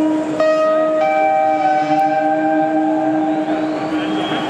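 Live band's sustained chord over the stadium PA: a steady low note held throughout, with higher notes joining about half a second and a second in.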